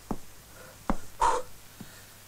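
A man's short, sharp breath huffs while boxing, with light taps: a tap, then another tap followed at once by a loud huff about a second in, and a last tap near the end.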